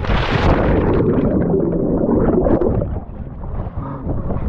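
A splash as a person plunges into a swimming pool, followed by a muffled, churning water rumble with the waterproof camera under the surface; it eases a little near the end as he comes up.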